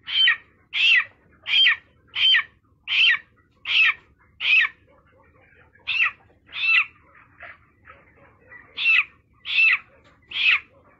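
A chicken held in a hand calling over and over, short loud calls about one every 0.7 seconds, each falling in pitch at its end. There is a break about halfway through, then a few fainter calls before the loud ones resume.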